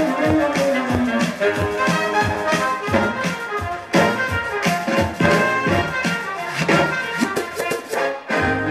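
A DJ set playing from turntables and a mixer: a music track with a steady beat and sustained instrument notes. One note slides down in pitch over the first second or so.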